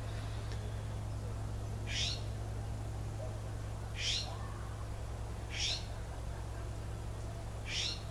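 A bird calling: four short, high calls that sweep downward in pitch, spaced about two seconds apart, over a steady low hum.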